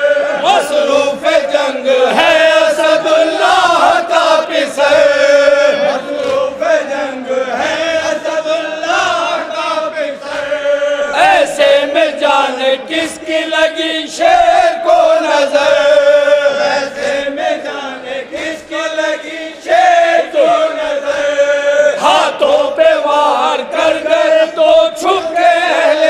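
A noha, a Shia mourning lament, chanted by a group of men: a lead reciter on a microphone with a chorus singing along in long held notes.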